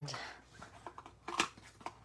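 Paper crafting handling noise: a faint rustle of cardstock and a few small sharp clicks and taps, the clearest about a second and a half in, as small paper pieces are handled and pressed onto a card.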